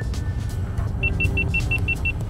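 A quick run of short, high electronic beeps, about six a second, starting about a second in, over the steady low rumble of a car cabin on the move: an overheating camera's warning signal.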